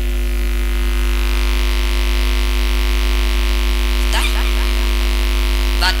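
Loud, steady electrical mains hum from a public-address sound system: a deep low buzz with a stack of steady higher tones above it, unchanging throughout. A brief bit of voice comes about four seconds in.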